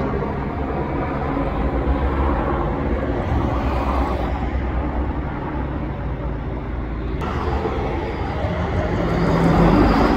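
Army helicopter flying overhead, with a steady rumble of rotor and engine that swells a little near the end.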